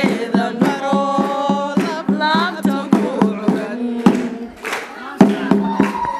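A woman sings a wedding song through a microphone, over a steady beat of about three to four strokes a second from hand-clapping and percussion.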